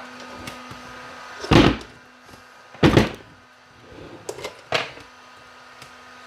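Hollow thuds from a plastic battery case being tipped and knocked against a workbench, two loud ones about a second and a half and three seconds in, then a few lighter knocks. The glued-in lithium cell pack inside is held by strong adhesive and does not come loose.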